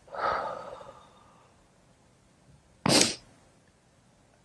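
A person's breath: an audible exhale that fades out over about a second, then one short, sharp sniff about three seconds in.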